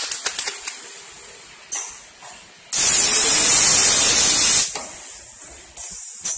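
Pneumatic pad printing machine cycling: a few light clicks, short hisses of compressed air, then a loud, steady hiss of air for about two seconds in the middle, and another short hiss near the end.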